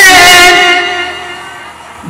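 A man's singing voice holds the last note of a line, which fades out gradually over about a second and a half; the next line starts right at the end.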